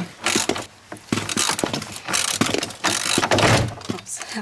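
Ratchet wrench clicking in quick runs as it undoes the last nut holding a car's steering column, with a short pause about a second in.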